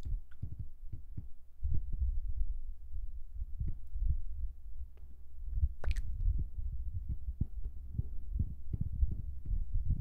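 Irregular soft, low thumps and rubbing close to a sensitive microphone, typical of ASMR trigger sounds, with one sharper click about six seconds in.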